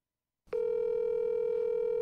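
Telephone ringback tone: a single steady ring tone that starts about half a second in, as an outgoing call rings unanswered before being forwarded to voicemail.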